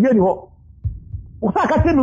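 A man talking, with a short pause in the middle; low, dull thumps start about a second in and carry on under his voice.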